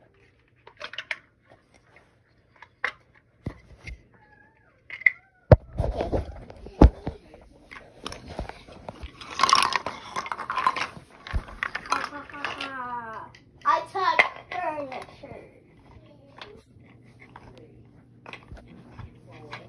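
A child's voice making wordless calls and sounds, some gliding down in pitch, mixed with knocks and rustling from a phone being handled close to the body; the sharpest knocks come about five to seven seconds in.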